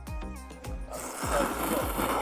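A person slurping soba noodles: one loud, hissing slurp about a second long, starting halfway through, over background music with a steady beat.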